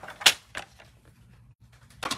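Two sharp plastic-and-paper clacks, a loud one then a softer one, as a paper trimmer and cut cardstock are handled on a craft table, followed by light paper rustling.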